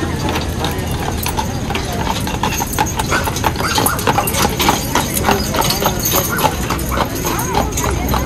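Hooves of a pair of carriage horses clip-clopping on asphalt as they pull a carriage past, the hoofbeats thickest and loudest in the middle as the team goes close by.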